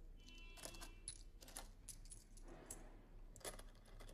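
Faint, scattered small clicks and light clinks over a steady low hum, close to silence.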